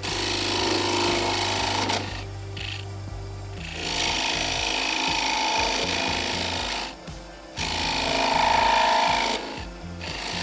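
A small wooden top spinning on a lathe while a turning tool cuts into the narrow neck at its end to part it off, giving a scraping, rasping cut. The cutting comes in three passes with brief pauses between them.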